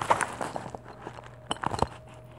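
Plastic bubble-wrap mailer being handled and opened: a few sharp crackles and crinkles, one just after the start and a quick cluster a little past halfway.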